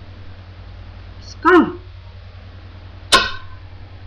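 Two short wordless vocal sounds from a person. The first has a sliding pitch about a second and a half in; the second starts more sharply a little after three seconds. A low steady hum runs underneath.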